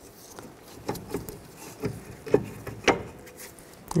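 Brake caliper being slid over new rear brake pads: a handful of light metallic clicks and knocks at irregular spacing, with some scraping, a few of them ringing briefly.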